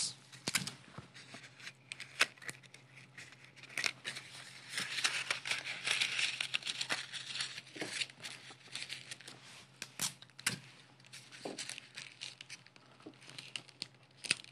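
Corrugated paper crinkling and crackling as hands press and pleat it into a round rosette, with many scattered sharp clicks and a denser run of rustling in the middle.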